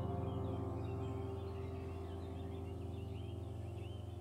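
Soft background music: a held keyboard chord slowly fading, with small bird chirps scattered over it.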